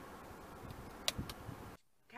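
Faint background hum inside a car cabin with a few light clicks about a second in, cutting off to silence just before the end.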